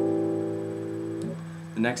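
Fingerpicked A minor 7 chord on a classical guitar, ringing and slowly fading. About a second and a half in the upper strings are damped, leaving one low note sounding.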